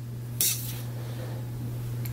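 Yarn being drawn out by hand to length, a short swishing hiss about half a second in, over a steady low hum.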